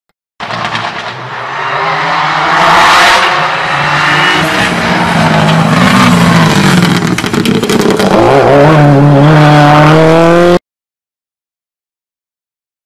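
Racing car engine revving hard; its note climbs about eight and a half seconds in and holds high, then the sound cuts off suddenly.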